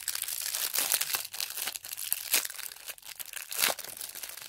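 Clear plastic wrapping around a three-pack of mini perfume spray bottles crinkling as it is handled, a run of irregular crackles.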